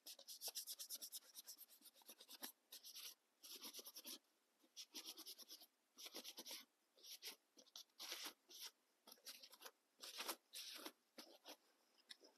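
Faint paper towel rubbing over an artificial mallard head's bill in short, repeated scrubbing strokes with brief pauses, wiping off excess black pastel to leave it only in the crevices.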